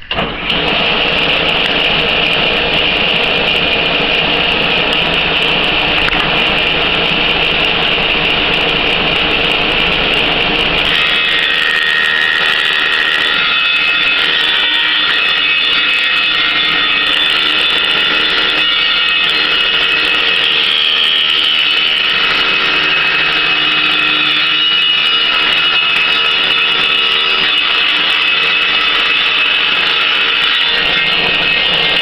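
Power saw under a workshop saw table switching on and running steadily, then ripping a strip of Brazilian ironwood along the fence; about eleven seconds in the sound shifts to a higher whine as the blade cuts the hard wood.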